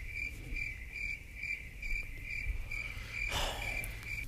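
Crickets-chirping sound effect: a steady, evenly paced chirp about two to three times a second. It is the stock gag for an awkward silence after a joke falls flat.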